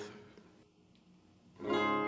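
A brief near-silent pause, then about a second and a half in an acoustic guitar chord is struck and left ringing: the first chord of the song.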